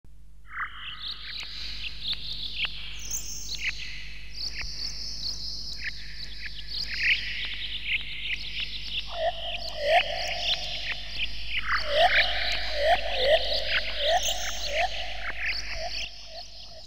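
Forest ambience of many birds chirping and calling over one another, with a lower call repeating several times from about nine seconds in.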